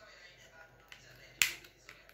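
A sharp plastic click about one and a half seconds in, with a couple of lighter clicks around it, as the back cover of a Walton feature phone is pressed and snapped into place.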